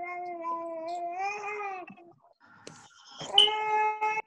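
A baby crying in long, steady whines: one held cry that fades out about two seconds in, then a second, shorter cry near the end. The baby is upset.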